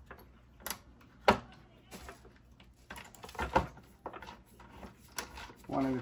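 Scattered sharp clicks and knocks from a screwdriver and screws being worked by hand while fastening the freezer fan motor back into a refrigerator. The sharpest click comes about a second in, and a few more are spread through the rest.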